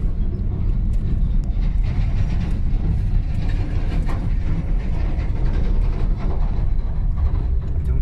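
Steady low rumble of a vehicle driving over a rough dirt road, heard from inside the cabin, while a container semi-trailer truck drives close alongside.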